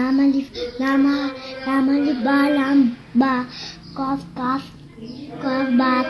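A small girl chanting Arabic letter names in a sing-song, reading aloud from a Noorani Qaida primer. Her voice comes in short held syllables, each on a steady pitch, with brief pauses between.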